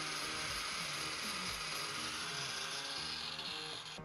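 An angle grinder runs steadily, its disc grinding paint and rust back to bare steel around a rusted-through hole in a steel hull. The sound is a continuous grinding hiss that eases off just before the end.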